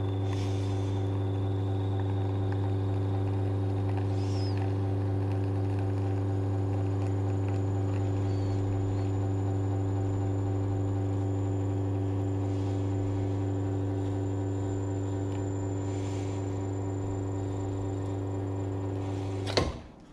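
La Marzocco espresso machine's pump running with a steady low hum while a shot extracts, then cutting off with a sharp click about half a second before the end as the shot is stopped.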